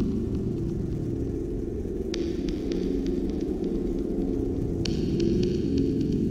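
Dark ambient horror drone: a deep, steady hum with throbbing low tones, and light crackling that comes in about two seconds in and again near the end.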